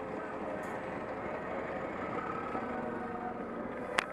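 Steady street traffic heard from a moving bicycle: engines of queued buses and cars running alongside, as a constant hum. A sharp click comes at the very end.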